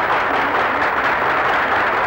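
A roomful of people applauding, a dense steady clatter of many hands clapping.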